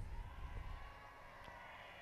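A very quiet pause in a broadcast speech: only a faint, steady background hiss and low hum.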